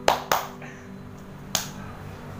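Three sharp hand claps: two in quick succession near the start and a third about a second and a half in.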